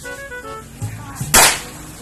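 A single sharp firecracker bang a little over a second in, over music with a steady beat and melody.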